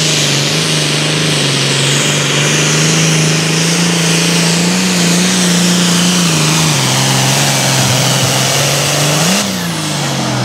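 Super farm class pulling tractor's diesel engine running hard at steady high revs under load as it pulls the sled, with a high whine above it slowly falling in pitch. The engine note dips a little about two thirds of the way through, and near the end it revs briefly and then winds down.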